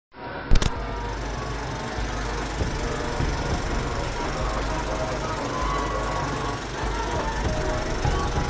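A sharp click, then the steady mechanical clatter of an old film projector running, with faint music under it.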